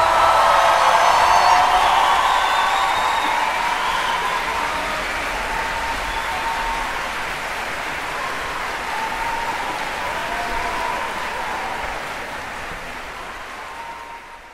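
Large concert audience applauding, with cheering voices in the first couple of seconds; the applause gradually dies down.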